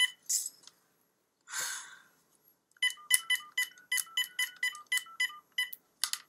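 Cordless phone keypad beeping as a number is dialed: a quick run of about a dozen short touch-tone beeps in the second half. Before the beeps there is a click and a brief rustle.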